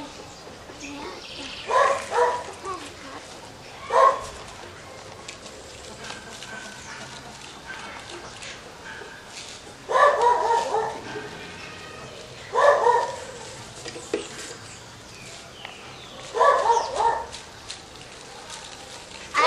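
A dog barking in short bouts of one to a few barks, about five times, several seconds apart.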